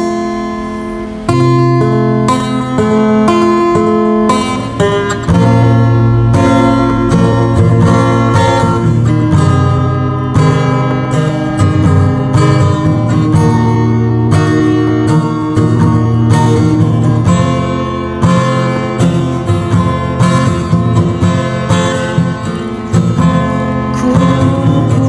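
Acoustic guitar music: a guitar plays a run of chords in an acoustic arrangement of a sholawat song.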